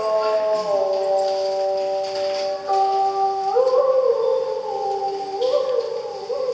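Vietnamese traditional music: a đàn bầu (one-string monochord) playing long held notes that slide from pitch to pitch, stepping down in the first half, then bending up with a wavering vibrato twice in the second half.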